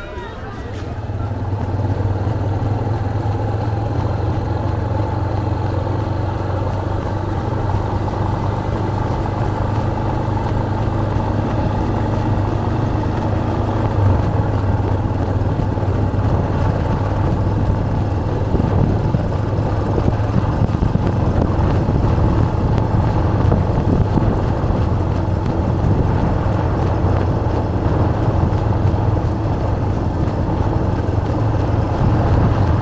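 Steady low drone of a motor vehicle's engine and road noise while driving along, heard from aboard the vehicle.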